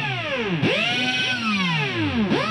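Background music made of sweeping tones that glide up and down, with a new sweep starting about half a second in.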